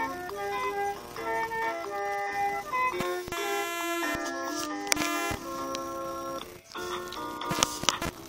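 LeapFrog My Pal Violet plush puppy playing a simple electronic tune through its small speaker, one steady note after another. A few sharp knocks cut in around the middle and near the end.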